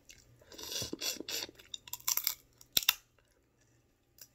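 Boiled crab legs being cracked and picked apart by hand while eating, with chewing sounds: a crackly, rustling stretch in the first second and a half, then a few sharp cracks of shell about two to three seconds in.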